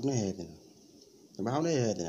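A man's voice drawing out a sing-song phrase whose pitch rises and falls, after a short pause about half a second in.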